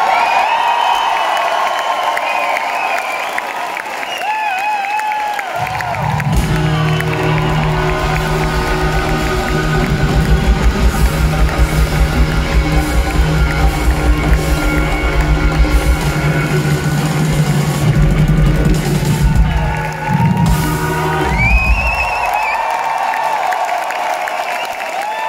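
Crowd cheering and whooping, then a live rock band comes in loud with heavy bass and drums on a steady beat for about sixteen seconds. The band stops sharply, and the crowd cheers again near the end.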